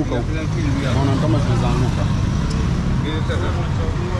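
Street sounds at a roadside market: untranscribed voices talking over a steady low rumble of motor traffic.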